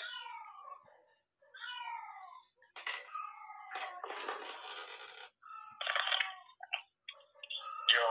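A cat meowing several times, each call falling in pitch, followed by a stretch of noise.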